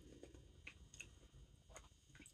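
Near silence with a few faint mouth clicks from a person chewing a mouthful of noodles.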